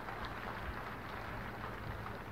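Audience applauding steadily, many hands clapping together, with a low steady hum underneath.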